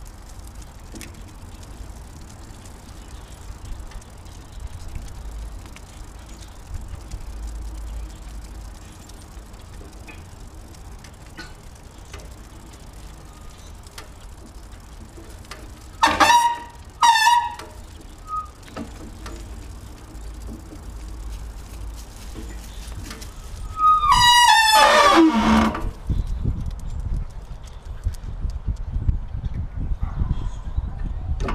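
Huskies vocalizing on the leash: two short, high yelps about sixteen and seventeen seconds in, then a longer call falling steeply in pitch around twenty-four seconds in, over a steady low rumble.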